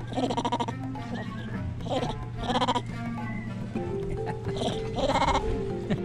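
Background music of sustained, slowly changing notes, overlaid by about five short vocal bursts with a fast pulsing quality, spread through the clip.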